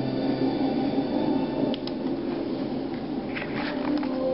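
Film sound design of a deep-sea dive to a shipwreck: a dense, steady underwater rumble, with a few faint clicks about two seconds in and again near the end.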